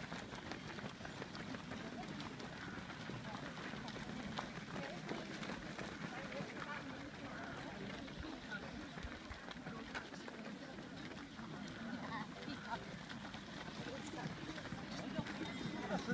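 Footsteps of a large group of runners going past on a paved path, many overlapping footfalls, with indistinct chatter of voices.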